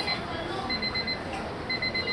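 Digital countdown kitchen timer beeping at zero: short groups of rapid high beeps, about one group a second, signalling that the countdown is up.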